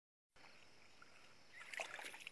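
Faint hiss, then a few soft wet splashes and rustles near the end as carp shift in a mesh net in shallow water at the shore.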